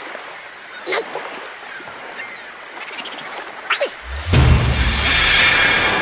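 Cartoon sound effects: two short falling whistle-like glides and a quick run of ticks, then about four seconds in a loud, sustained shimmering swell over a low rumble, like a magical reveal as a glowing clam shell opens.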